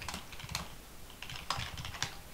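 Typing on a computer keyboard: a quick, uneven run of keystrokes as a terminal command is typed.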